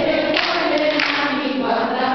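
A group of voices singing together, holding long sustained notes, with two short sharp clicks about half a second and a second in.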